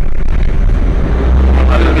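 Generac generator set engine running with a loud, low drone that swells about a second and a half in.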